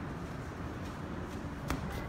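Steady background noise of a large store, with one sharp click near the end.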